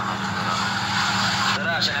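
Steady low hum and hiss, with a man's voice starting to speak near the end.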